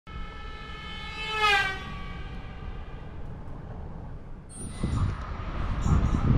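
Train horn sounding one held note, which swells and slides down in pitch about a second and a half in, then fades. From about four and a half seconds, the rumble of a passing train builds.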